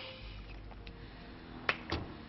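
A single sharp click near the end over faint, steady background music.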